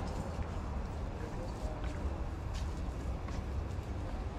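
Open-air market background: a steady low rumble with a few faint clicks scattered through it.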